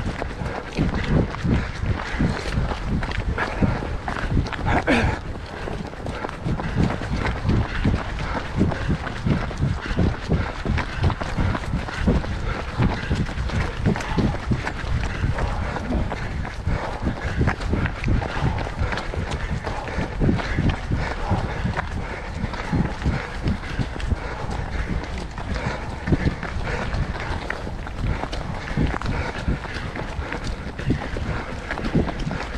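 Running footfalls on a gravel-and-dirt path in a steady rhythm, heard from a camera carried by a runner, with a low rumble from the microphone being jostled.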